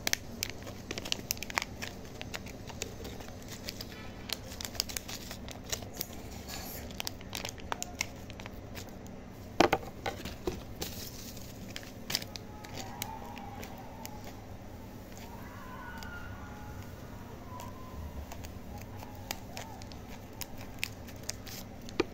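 Crinkling and tearing of a plastic-foil Magic Pops candy packet being worked open, by hand and then with scissors, in many scattered sharp crackles. One louder snap comes about ten seconds in.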